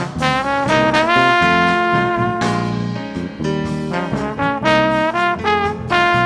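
Jazz quartet: trombone playing the melody over piano, electric bass and drum kit. About a second in, the trombone slides up into a note and holds it for about a second and a half.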